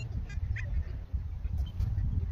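Outdoor air with a steady rumble of wind on the microphone and a few short, high bird calls near the start.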